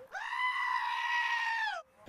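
A black-faced sheep bleating: one long, loud call that rises in pitch at the start, holds and drops away at the end.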